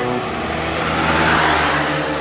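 A rushing, car-like noise that swells to a peak past the middle and then eases off. It plays over the steady low notes of a music track.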